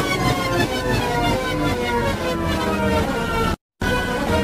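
A pitched sound with several overtones sliding slowly and steadily down in pitch, broken by a brief total dropout near the end.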